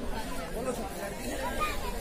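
Crowd chatter: several people talking at once, no single clear voice.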